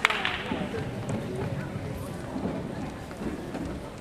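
Indistinct voices of people talking across a gymnasium, with one sharp knock right at the start.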